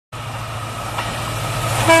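An approaching Indian Railways WDG4-family diesel locomotive runs with a low, steady engine rumble. Just before the end its horn starts sounding, one loud steady blast.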